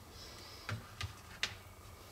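Three faint, short clicks and taps of a smartphone being handled, spread over about a second.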